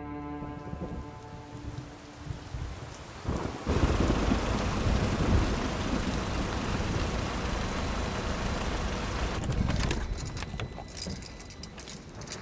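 Rain and rolling thunder, surging in suddenly about four seconds in with a deep rumble and easing off near ten seconds. A run of light, sharp clicks follows near the end.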